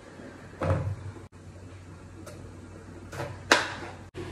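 A dull thump about a second in and a sharp knock near the end: a bottle gourd set down on a wooden chopping board, then a kitchen knife cutting through it against the board.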